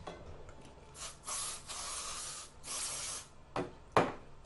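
Two bursts of hissing: the first about a second and a half long, the second shorter. A sharp click and then a louder knock follow near the end.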